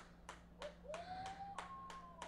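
Faint hand clapping in a steady rhythm, about three claps a second, over a steady low hum.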